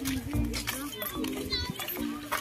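Background voices of people, children's among them, with a high voice calling out about one and a half seconds in, over music playing in the background.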